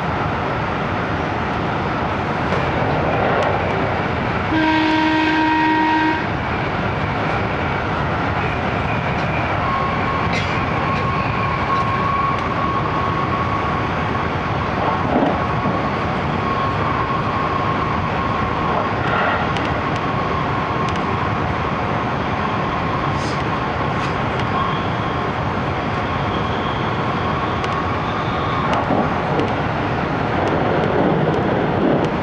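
Steady running noise heard inside a 373 series electric train car at speed. About five seconds in, a train horn sounds for about a second and a half. From about ten seconds in until near the end, a steady high whine runs under the rumble.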